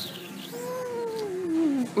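A long, drawn-out vocal "ooh" from one voice, gliding slowly down in pitch for over a second.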